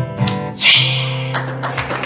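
Acoustic guitar strumming the closing chords of a ragtime song, ending on a held chord that rings for about a second. Scattered clapping begins near the end.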